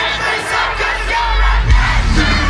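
Arena concert crowd shouting and singing along over the band's loud live rock music. Heavy bass comes in about half a second in.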